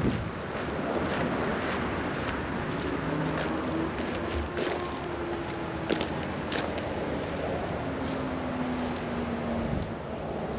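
Steady outdoor background noise with a faint engine hum from a distant vehicle, its pitch slowly falling over several seconds. A few light clicks sound in the middle.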